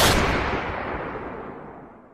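A single booming impact sound effect, one sudden hit that fades away steadily over about two seconds.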